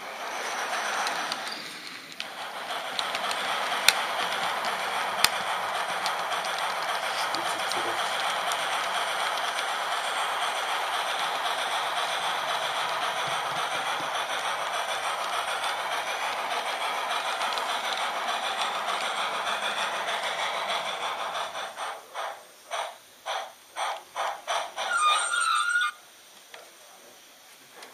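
H0 scale model train running along the layout's track, heard from a camera riding on it: a steady running whir with two sharp clicks a little over a second apart. Near the end the sound breaks into a series of short bursts.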